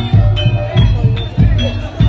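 Live Javanese gamelan music for a barongan dance: a quick, steady drum beat under ringing metallophone and gong notes.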